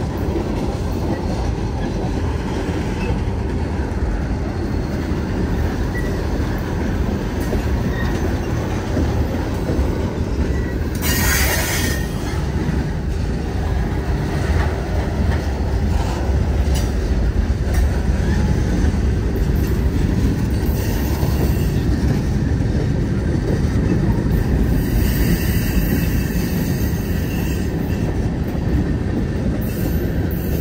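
Manifest freight train's cars rolling past close by: a steady rumble of steel wheels on rail. A brief high-pitched burst comes about eleven seconds in.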